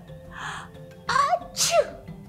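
A woman sneezing into her elbow: a breathy in-breath, then a loud 'ah-choo' about a second in that rises and then falls in pitch. Soft background music plays under it.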